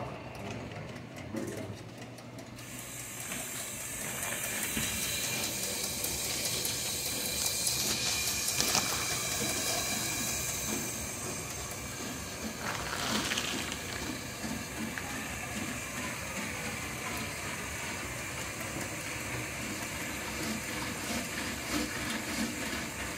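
Water from a garden hose running full into a laundry drain standpipe: a steady rushing hiss that comes in a couple of seconds in and swells toward the middle.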